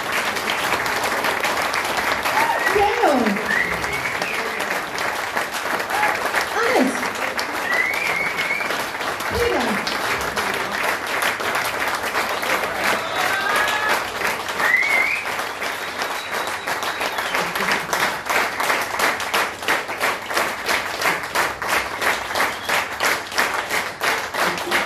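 Audience applause with a few cheers. In the second half it settles into rhythmic clapping in unison to a steady beat.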